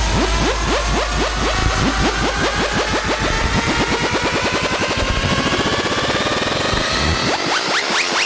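Electronic dance music from a fidget house DJ mix in a build-up: a sweep rises steadily while a drum roll speeds up, and the deep bass fades out in the second half.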